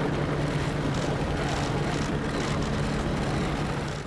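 A steady engine drone, like aircraft noise overhead, with faint short clicks repeating every half second or so. It fades out at the very end.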